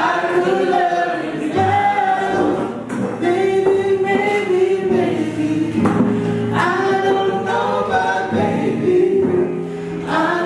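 A woman singing with her own nylon-string classical guitar accompaniment, holding long sung notes between short breaths.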